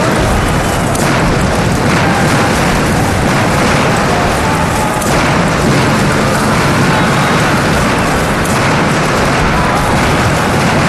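Dense, continuous battle din of explosions and gunfire, loud throughout with no pauses.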